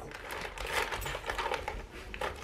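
A plastic dog-treat bag crinkling as a hand rummages inside it and then lifts it, a steady run of small crackles.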